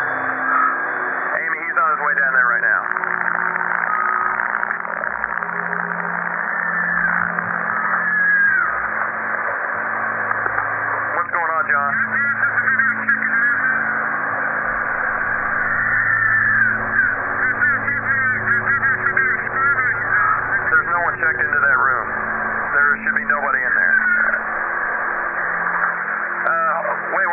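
Two-way radio hiss with garbled, indistinct voice chatter coming and going in thin, narrow-band bursts, over a low steady hum.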